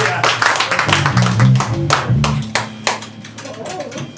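Audience clapping and cheering while a live rock band's electric guitar and bass ring out the closing notes of a song. The band sound fades about halfway through, leaving the clapping.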